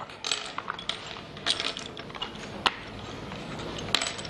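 Sticks of chalk clicking and rattling against each other and the desk as they are sorted and picked out, with a few sharp clicks, the sharpest a little before three seconds in, over soft handling rustle.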